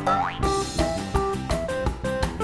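Cheerful instrumental children's music with short plucked notes over a steady beat, opening with a quick upward pitch slide.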